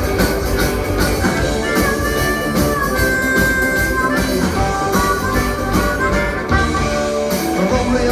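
Live rock band playing a boogie shuffle, with a harmonica solo of held, wavering notes over electric guitars, bass and drums.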